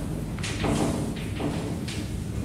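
Chalk tapping and scratching on a blackboard while writing: several short strokes about half a second apart.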